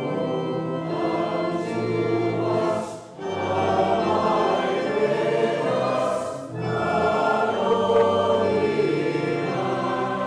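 Choir singing slow, sustained chords, with brief breaks between phrases about three seconds in and again around six and a half seconds in.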